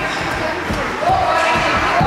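Ice hockey play: repeated knocks of sticks and puck on the ice and boards, with spectators' voices calling out over it, one call rising about a second in.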